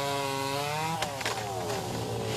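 Gas chainsaw running at high revs while cutting branches, its pitch climbing slightly. About halfway through it comes off the throttle and the pitch slowly falls.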